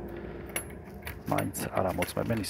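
Light metallic clicks and jingling of a thin metal strap seal knocking against a trailer door's steel lock-rod handle and hasp as it is handled, starting about half a second in. A voice is heard over it in the second half.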